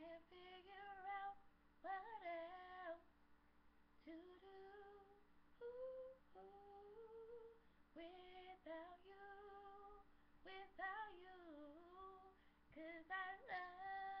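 A woman's voice singing a cappella, quietly, in long held notes and sliding runs, with no accompaniment.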